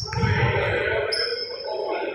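Echoing gym hall with low distant chatter and two thin high squeaks, one fading out in the first second and a longer one from about halfway, typical of basketball sneakers on a hardwood court.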